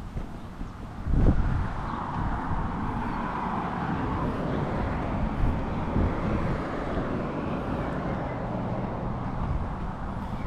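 Road traffic on a nearby suburban street: a steady rush of tyre and engine noise that swells about a second in, just after a bump of handling noise on the microphone.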